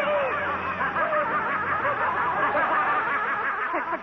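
Many voices snickering and laughing at once, layered over one another into a continuous jeering chorus.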